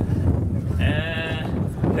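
A short, high-pitched, slightly wavering vocal call of about half a second near the middle, over a low rumble.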